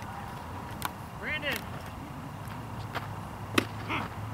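A short shouted call from the field, then one sharp crack of a baseball a little after three and a half seconds in, the loudest sound, as a pitch is hit or smacks into a glove.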